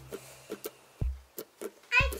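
A few light clicks and taps of small plastic toy figures being set down and moved on a tabletop, with a short low thump about a second in, during a break in the background music.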